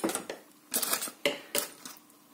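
A few short knocks and clinks of kitchen cookware and utensils, starting just under a second in.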